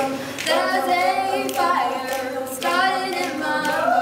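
A group of teenage voices singing together a cappella, in phrases a second or so long.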